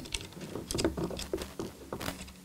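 Fingers handling a miniature replica camera and its fabric strap with small metal clip rings: a scatter of light, irregular clicks and rustles.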